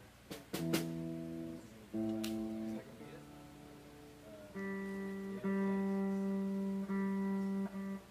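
Electric guitar being tuned through its amplifier: a couple of clicks, then single notes plucked and left to ring, with the same note struck again several times.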